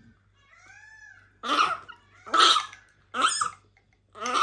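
Three short coughs, about three-quarters of a second apart, after a faint high squeak that rises and falls.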